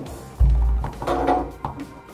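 A car door being lifted and set onto a steel stand: a dull low thump about half a second in, then a short pitched sound that dies away.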